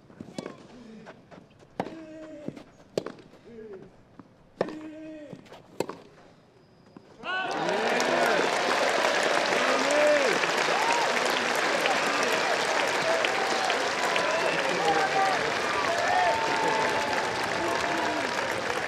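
A tennis rally: racket strikes on the ball about once a second, several of them with a player's grunt. The rally stops, and about seven seconds in the crowd suddenly breaks into loud cheering and applause for the point won, which carries on.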